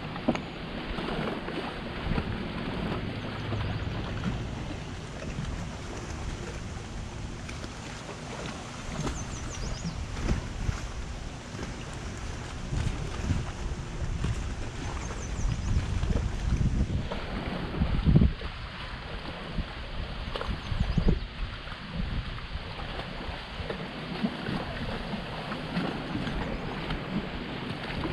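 Wind buffeting the microphone over water lapping against a fishing boat's hull, with a few dull knocks about two-thirds of the way through.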